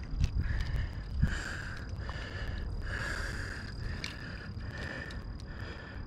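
Outdoor ambience: a steady high insect trill over low rumbling noise, with a soft hiss that swells and fades about once or twice a second.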